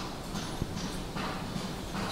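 Cattle hooves clopping and scuffing on a concrete shed floor as the bulls shift in their stalls: a loose series of short knocks, roughly two to three a second.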